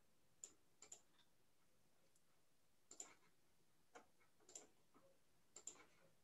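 Faint, irregular clicks of a computer mouse over near silence, about nine in all, several in quick pairs like double-clicks.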